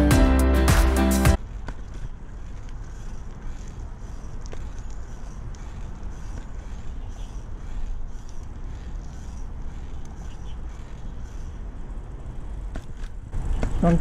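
Background music that cuts off about a second in, then the steady rumble of wind on the microphone and tyres rolling on a concrete path as a bicycle is ridden along.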